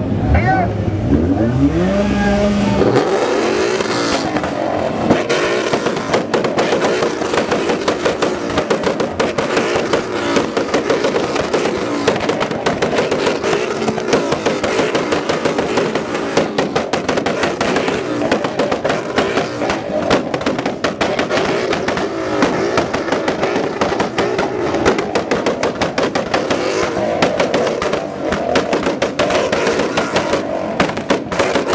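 Several car engines revving hard, rising in pitch over the first few seconds and then held high and sustained, with a dense crackle of sharp exhaust pops throughout.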